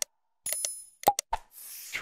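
Outro sound effects for the on-screen like-and-subscribe buttons: a string of short clicky pops and a single bell ding about half a second in, then a whoosh near the end as the graphic sweeps away.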